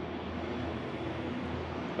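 Steady background hum of a large factory hall, with no distinct events.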